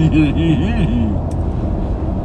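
A man hums a quick string of closed-mouth "mm" sounds, each rising and falling in pitch, while chewing a mouthful; the humming stops about a second in. Under it runs the steady low rumble of a car cabin on the road.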